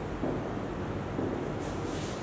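Marker pen writing on a whiteboard: two short strokes near the end, over a steady low room hum.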